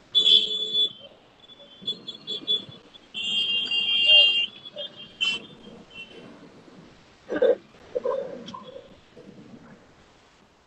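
Several short high-pitched beeping tones, then a louder steady one lasting about a second and a half, with a couple of sharp clicks later on.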